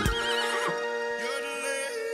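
A horse whinnying, with a quavering trill at the start and a second call from about a second in, over sustained notes of the closing music.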